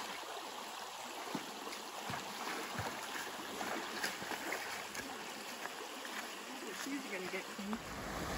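Creek water running steadily along the trail, with a few soft knocks.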